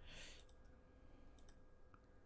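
Near silence with a few faint computer mouse clicks, about half a second, a second and a half and just before two seconds in, as folders are opened in File Explorer.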